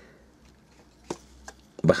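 Two small sharp clicks of the hard plastic parts of a small Transformers Legends-class Shockwave action figure being moved during its transformation, about a second in and half a second later.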